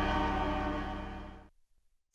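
Title theme music ending on a held chord that fades out over about a second and a half, followed by a brief silence.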